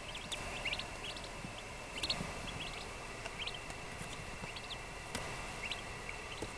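Two-day-old eastern wild turkey poults peeping: short, high calls that rise in pitch, several a second, scattered throughout.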